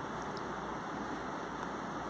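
Steady low hiss of room tone with no distinct events.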